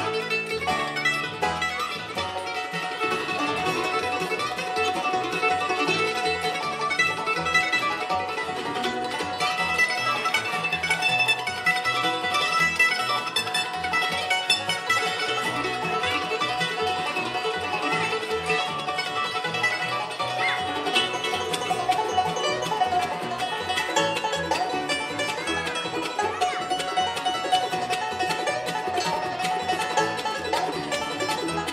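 Live bluegrass band playing an instrumental tune on mandolin, banjo, acoustic guitar and upright bass, with a steady driving rhythm.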